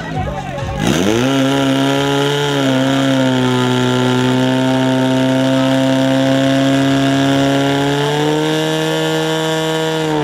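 A portable fire pump's engine revs up hard about a second in, its pitch rising for about a second, then holds a steady high-revving note as it drives water through the attack hoses to the nozzles.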